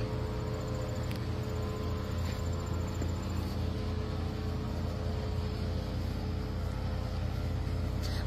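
Steady low mechanical hum with a few fixed tones, unchanging throughout.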